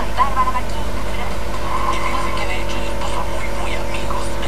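A steady low hum under faint snatches of speech.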